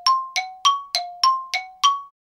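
A bell-like chime struck in a quick run, alternating between a lower and a higher note, about three strikes a second, seven strikes in all, each ringing briefly.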